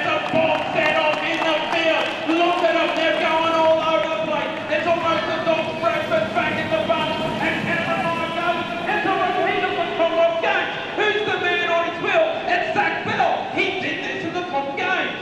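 Continuous speech: voices talking throughout.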